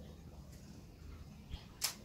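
A faint steady low hum, broken near the end by a small click and then one sharp, loud click.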